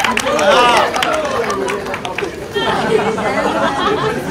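Several people talking at once: overlapping chatter of voices, with no single clear speaker.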